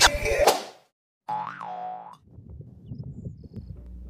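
A cartoon 'boing' sound effect: one short pitched tone that rises and then falls, coming just after electronic intro music fades out, followed by faint crackle.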